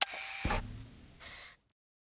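Short designed logo sound effect: a sharp click, a low thump about half a second in, then a bright whoosh with rising high whistling tones that cuts off after about a second and a half.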